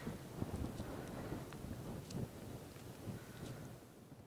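Low wind rumble on the microphone in an open field, with a few faint crackles, slowly fading toward the end.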